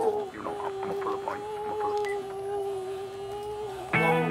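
A single steady tone held for about three and a half seconds, wavering slightly, with faint voices under it near the start; it cuts off just before the end.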